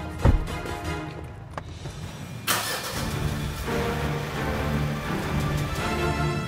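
A car engine starting about two and a half seconds in and then running under background music. A low thump comes near the start.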